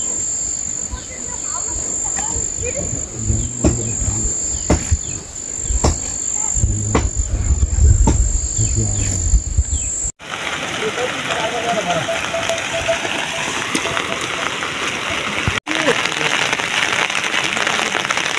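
A steady high insect trill with low wind rumble and repeated sharp snaps as a water buffalo calf crops grass. About ten seconds in, this cuts suddenly to a steady hiss of falling rain.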